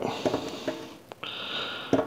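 Plastic threaded hose adapter being screwed onto a sink faucet by hand: a few faint clicks, then a short rasping scrape of the threads near the end.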